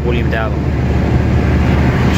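Heavy truck's diesel engine running steadily at motorway cruising speed, a low hum with road noise, heard from inside the cab. The truck is hauling a load of about 54 tonnes.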